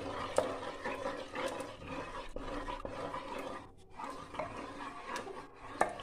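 A wooden masher churning cooked bathua and methi greens in an aluminium pressure cooker: a wet, continuous squelching and scraping, with a few sharp knocks of the wood against the pot.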